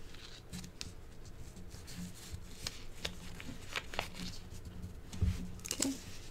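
A small square of origami paper being folded and creased by hand: faint scattered crisp rustles and clicks of the paper, with a soft thump about five seconds in.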